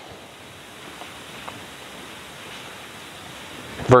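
Steady hiss of background room noise, slowly growing louder, with a couple of faint ticks.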